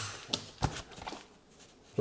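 Cinched camouflage nylon pouch with a packed metal mess kit inside being handled on a wooden table: a sharp click, another click, then a low thump and brief fabric rustling that fades about a second in.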